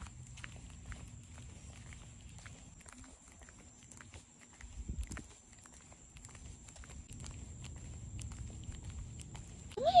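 Faint, irregular taps of sandal footsteps on a concrete sidewalk, over a low rumble and a steady thin high tone.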